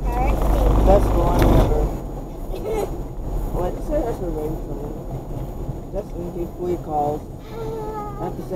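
Voices talking inside a moving car's cabin over a steady low road-and-engine rumble. The rumble is heavier for the first two seconds.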